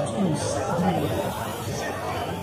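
Several people talking at once, their words not clear: the steady chatter of shoppers and vendors at a street market.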